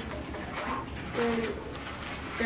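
Quiet room noise with one brief, low hummed voice sound a little past the middle.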